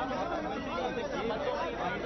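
Several people talking at once, a steady overlapping chatter of voices.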